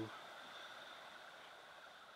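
Near silence: faint steady room tone with a thin high whine, and no distinct event.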